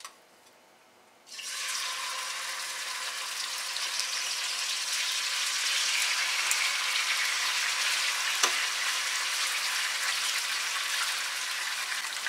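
Marinated tuna chunks sizzling in hot olive oil over high heat, starting suddenly about a second in as the pieces go into the pan. The sizzle is a steady hiss with a few pops.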